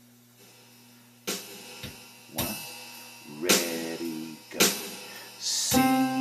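Drum backing track counting in with four evenly spaced hits about a second apart, then near the end the drum groove and an electric keyboard start together at a slow tempo.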